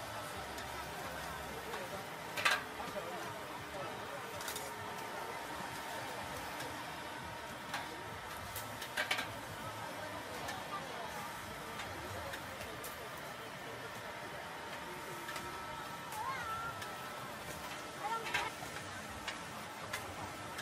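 Busy street-food stall ambience: indistinct chatter of several voices, with a few sharp clicks or clatters, the loudest about two and a half seconds in.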